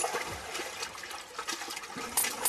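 Water running and splashing in a flooded floor, with a few sharp knocks mixed in.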